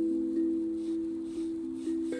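Hapi steel tongue drum in the A Akebono scale, played softly with mallets: a few light strokes keep low, bell-like notes ringing while the sound slowly fades.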